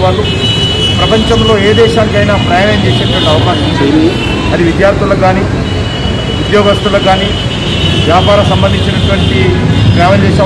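A man speaking continuously into press microphones, with a steady low background rumble underneath.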